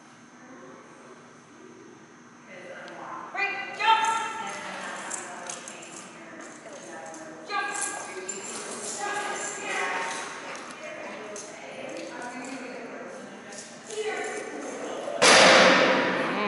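A person's voice in a large hall calling short, excited cues and encouragement to a dog running agility jumps. A loud, brief burst of noise comes near the end.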